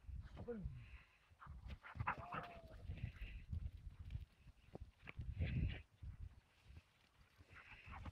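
Faint, short dog whines and yelps over intermittent low rumbling noise.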